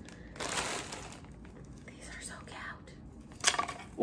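Thin plastic shopping bag rustling and crinkling as wrapped items are pulled out of it, loudest about half a second in and then softer. A short sharp crackle comes near the end.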